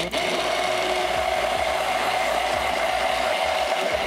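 Hand-held immersion blender switching on and running steadily in a tall plastic cup, with an even motor whine, as it emulsifies soy milk and oil into eggless mayonnaise.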